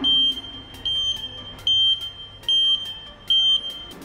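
Alarm buzzer on a face-mask and body-temperature scanning entry barrier, beeping five times in a high steady tone a little under a second apart: the warning that no mask is detected.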